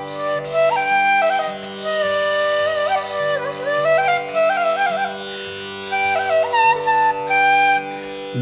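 Bamboo flute playing a Carnatic phrase of held notes joined by ornamental slides and quick wavers, in a few short phrases, over a steady drone.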